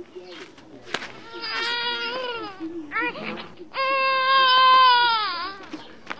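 A person crying out in high-pitched wails: a long wail, a short cry, then a longer, louder wail that drops in pitch as it ends.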